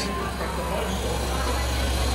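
Cotton candy vending machine running with a steady low hum and an even hiss.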